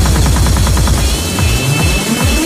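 Vixa/pumping-style electronic club music: a rapid pulsing bass line that drops out a little over a second in, followed by a rising synth sweep.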